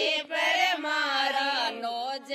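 Women singing a Rajasthani folk song together without accompaniment, in long held notes that slide between pitches.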